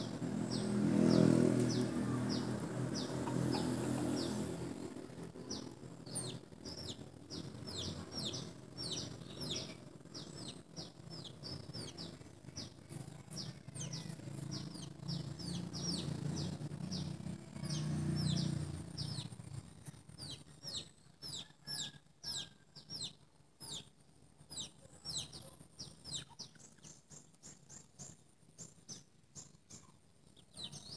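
Small birds chirping: a steady run of short, high, falling chirps, a few each second, that grows denser near the end. A low rumble sits underneath in the first few seconds and again for a few seconds past the middle.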